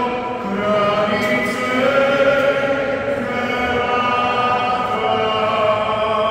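Many voices singing sacred music together during Mass, in long held notes that echo through a large stone church.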